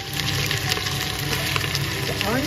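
Raw beef chunks and sliced onions sizzling in hot oil in a pressure cooker pot: a steady, crackling hiss that is a bit loud, as the meat sears and its juices steam off.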